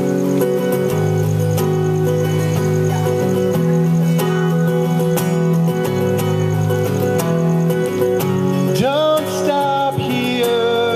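Acoustic guitar strummed live, an instrumental stretch of a song with steady chords, and a note sliding upward near the end.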